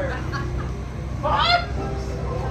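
A person's voice giving a short, loud cry that rises steeply in pitch about a second and a half in, over fainter scattered voices and a steady low hum.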